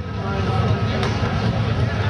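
Jeep CJ engine running under heavy throttle as it churns through a mud pit, a steady low rumble that grows louder over the two seconds. Faint voices sound behind it.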